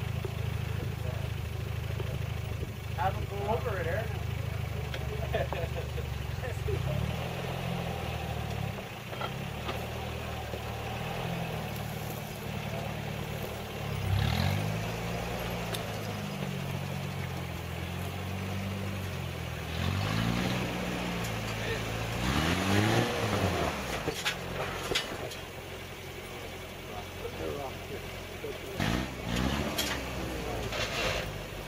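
Lifted Toyota 4Runner's engine idling and revving in repeated rising bursts as it climbs a steep rock ledge, with the loudest revs about halfway through and again a few seconds later.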